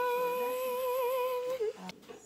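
A young girl's voice holding one long, steady note that wavers slightly near the end and dips in pitch as it stops, about a second and a half in.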